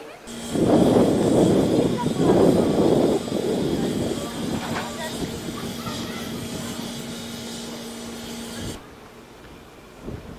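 A steam locomotive, the DR class 65.10 tank engine 65 1049, letting off steam with a loud hiss and a steady low hum underneath. The hiss is loudest in the first few seconds, fades slowly, and cuts off abruptly near the end.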